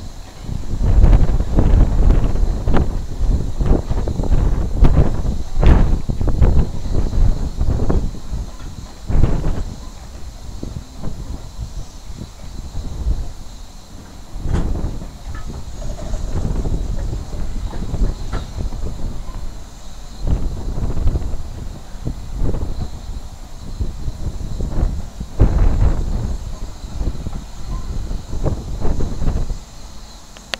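Replica Puffing Billy steam locomotive running slowly, its exhaust chuffing in deep, uneven beats that are loudest in the first ten seconds and then rise and fall as it moves away.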